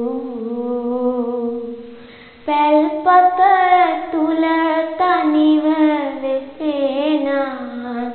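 A girl chanting Sinhala kavi (traditional verse) in a slow, ornamented melody, with long held notes and sliding, wavering turns between them. There is a short breath pause about two seconds in.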